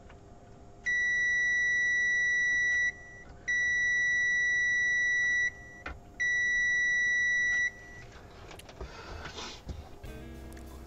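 ANENG AN-888S digital multimeter's continuity beeper sounding three long, steady beeps of about two seconds each, one for each diode probed: all three diodes on the TV's power board read short.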